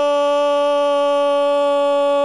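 A football commentator's drawn-out "gol" shout: one long held note at a steady pitch, called for a goal just scored.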